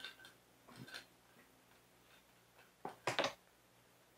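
Light clicks and taps of plastic clamp arms being handled and screwed into a plastic tool holder: a few faint clicks early, then a louder quick cluster of clicks about three seconds in.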